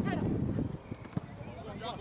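Shouts of players in an outdoor football game, with wind rumbling on the microphone at first. About a second in, a football is kicked once: a single sharp knock.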